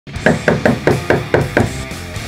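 Knocking on a wooden door: about seven quick, evenly spaced knocks, roughly four a second, stopping about a second and a half in, with background music underneath.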